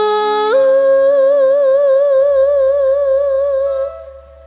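A female sinden's voice singing one long held note into a microphone. It steps up in pitch about half a second in, then sways with a wide vibrato and fades near the end, while a low steady tone joins underneath about halfway through.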